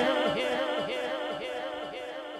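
A male naat reciter's amplified voice holding a long, wavering sung note that fades steadily away.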